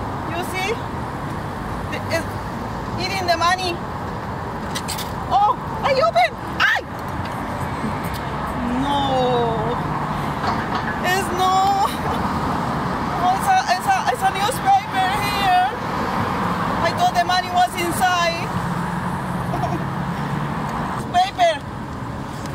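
Steady street traffic with a vehicle engine humming for a few seconds at a time, under a voice speaking in short snatches. A few sharp clanks come about five to seven seconds in, as from a metal newspaper vending box being worked open.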